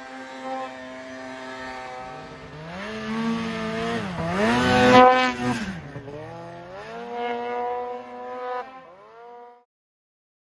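Snowmobile engine revving up and down in deep powder, its pitch climbing and dropping several times and loudest about five seconds in. The sound cuts off suddenly near the end.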